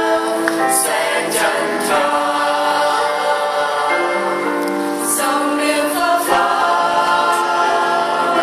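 A choir of mostly women's voices with a few men's singing in harmony, holding long chords, with the sibilant consonants sung together in short sharp hisses several times.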